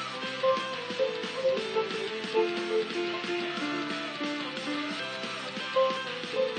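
Music: a Glarry GPP-101 digital piano playing short repeated notes in threes, following the app's exercise, over a backing track with strummed guitar.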